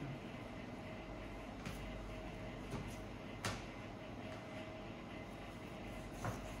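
A low steady hum with a few faint taps of a chef's knife on a plastic cutting board while trimming skin off raw chicken. The clearest tap comes about three and a half seconds in.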